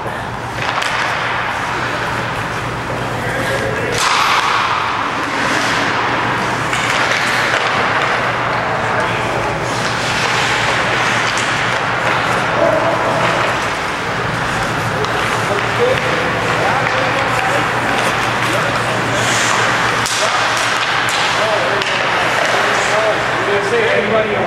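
Ice hockey play: skate blades scraping the ice, sticks and puck clacking now and then, and indistinct player voices, over a steady low hum.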